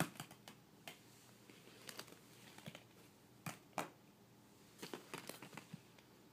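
Hollow plastic ball-pit balls knocking and clicking together as they are handled, in scattered light taps with a quicker run of them near the end.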